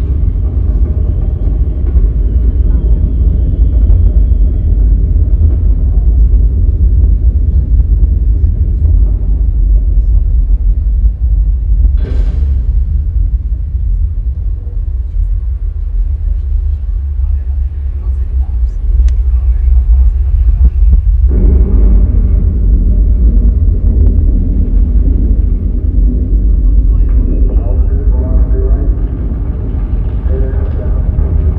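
Deep, continuous rumble of a Saturn V rocket launch, the show's soundtrack played loud over outdoor loudspeakers.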